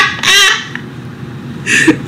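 A man laughing: a short, high, wavering laugh, then a brief breathy burst near the end.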